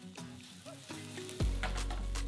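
Red wine sizzling in a hot frying pan with garlic cloves, deglazing it for a wine sauce. The sizzle starts suddenly about a second and a half in, over a low rumble, after a few soft notes of background music.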